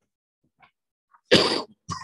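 Near silence, then a person coughs twice near the end: a loud cough followed by a shorter, softer one.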